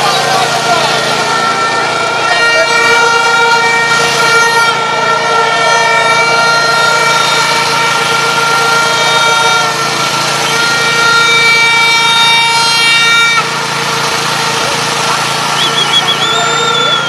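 A protest crowd's clamour with a loud, steady horn blast held for about eleven seconds over it, cutting off sharply near the end.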